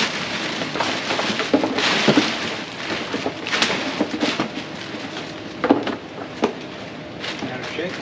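Tissue paper and plastic bags rustling and crinkling as a shoebox and bags are unpacked by hand, with irregular sharper crackles.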